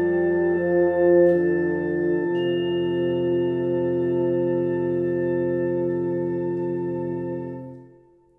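Wind band playing sustained chords. The harmony changes about two seconds in, and the final long held chord dies away near the end into silence.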